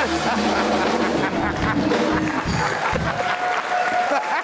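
Studio audience applauding and laughing, with voices mixed in.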